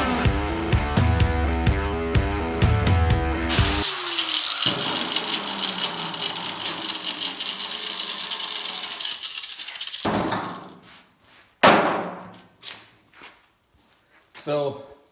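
Rock music with a heavy beat for the first four seconds. Then an angle grinder with a rust-stripping disc whirs on its own, the whir falling and fading over about six seconds as it winds down. A few short knocks and rustles follow, one of them loud.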